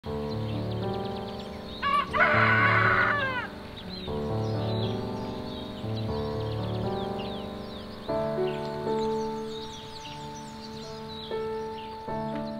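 A rooster crows once, about two seconds in, a call of roughly a second and a half that falls in pitch at the end. Soft background music with sustained chords runs underneath, with faint high bird chirps.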